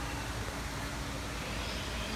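Steady background noise: an even hiss over a low rumble with a faint steady hum, and no distinct event.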